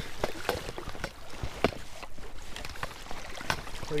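Scattered knocks and clicks with water sloshing around a kayak as a shot duck is picked up out of the marsh water; the sharpest knocks come about one and a half seconds in and near the end.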